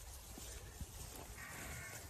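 Dairy or beef cattle herd close by, mostly quiet, with a faint cow call starting about one and a half seconds in over a low rumble.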